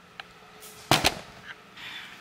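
Two sharp knocks in quick succession about a second in, from the camera being set down and propped up on a kitchen counter, with a fainter click just before.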